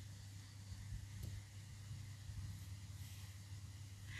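Faint room tone: a low steady hum with one light click about a second in.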